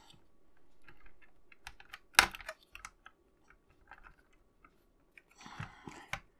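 Small scattered clicks and taps of fingers fitting a plastic-and-metal steering linkage ring onto a scale model car's front suspension, with one sharper click about two seconds in.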